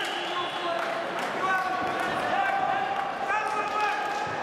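Voices calling out across a large sports hall during a wrestling bout, with a few scattered thuds.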